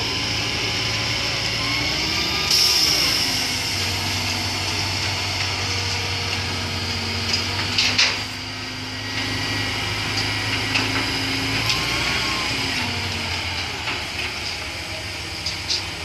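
Terex truck crane's engine running steadily as it lowers a steel lattice catenary mast, with a few sharp knocks about halfway through.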